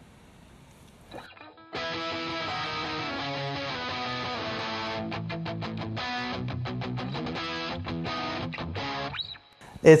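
Distorted electric guitar with a pop-punk rock tone, from an amp-simulator preset. It sounds one chord that rings for about three seconds, then plays a run of short, choppy chord strokes at roughly four a second, which stop shortly before the end.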